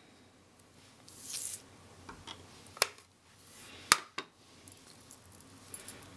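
Plastic stamping tools and an ink pad case being handled on a desk: a brief soft rustle about a second in, then a few light clicks, two of them sharp and about a second apart near the middle.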